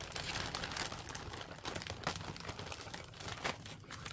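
Packaging crinkling and rustling as it is handled or shifted, with many small clicks and crackles throughout.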